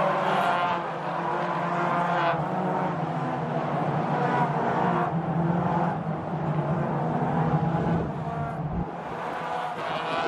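Toyota 86 race cars' 2.0-litre flat-four engines running hard as several cars pass one after another on the circuit, their engine notes overlapping and changing pitch every couple of seconds.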